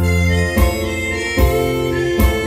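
Slow rock instrumental backing track: a held lead melody over bass and keyboard chords, with a drum beat about every 0.8 s.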